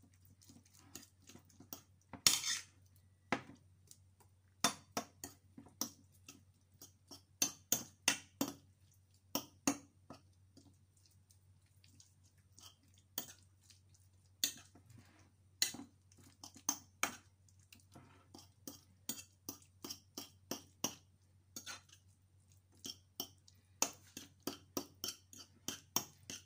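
Metal fork clinking and scraping against a ceramic plate in quick, irregular taps while mixing chopped corned beef with a raw egg, with a short lull about halfway through. A faint low hum runs underneath.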